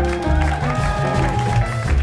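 Live swing jazz from a small band of grand piano, upright bass and drums, the double bass walking underneath the melody.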